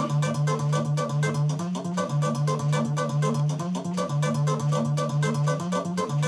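LEMUR GuitarBot, a robotic electric guitar, playing a fast repeating riff: about four notes a second over a low repeating bass note, with a sustained, organ-like tone.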